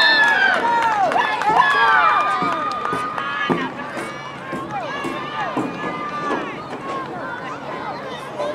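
Spectators at a youth football game shouting and calling out, many voices overlapping; loudest at the start, then dying down.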